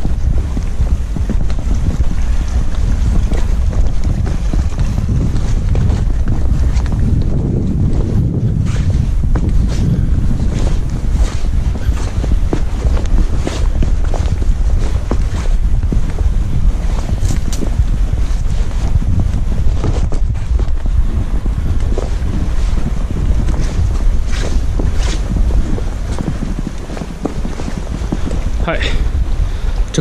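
Wind buffeting the camera microphone in a steady low rumble, with scattered clicks of footsteps on bare rock.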